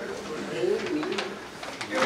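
A man preaching in a low voice.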